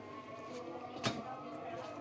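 Quiet kitchen background with one sharp click about a second in, while a roti cooks on an upturned tawa over a gas burner.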